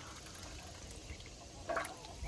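Faint water lapping and sloshing as a young duck paddles in a galvanized metal stock tank, with a short louder noise near the end.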